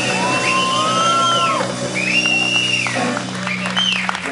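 Two electric guitars playing the end of a song live: long sustained lead notes that bend up and arch back down in pitch, over a steady held low chord.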